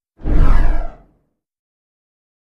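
A single whoosh sound effect on the outro card: it starts suddenly with a deep rumbling low end and fades away within about a second.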